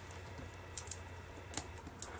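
A few faint clicks and taps as a stack of baseball cards is handled, over a steady low background hum.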